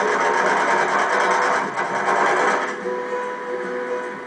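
Electric sewing machine running steadily, stitching a patchwork seam, then easing off about three seconds in, heard through a television set's speaker.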